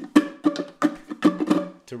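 Ukulele strummed in the eight-stroke rumba flamenco pattern: a quick run of chord strokes, several a second, each with a crisp percussive attack.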